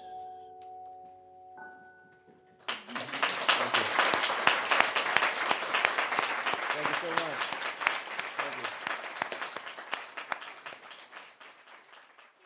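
The last chord of an acoustic song ringing out, then, almost three seconds in, an audience suddenly breaks into applause with a few voices calling out, which dies away near the end.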